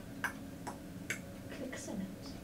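A woman making the click consonants of Zulu with her tongue: a few sharp, separate clicks about half a second apart.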